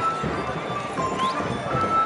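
Music playing in the background with light percussion, under faint outdoor voices.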